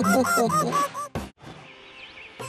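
Cartoon characters laughing in high, bouncing voices, stopping about a second in, followed by one short burst of noise and then a quiet stretch.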